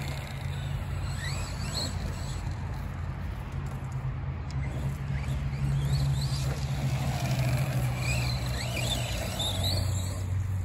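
Arrma Big Rock 3S RC monster truck's brushless motor driving at a distance, its faint whine rising in pitch several times as the throttle is opened. A steady low rumble runs underneath.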